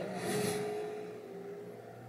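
A racing car's engine receding after speeding past, getting steadily quieter.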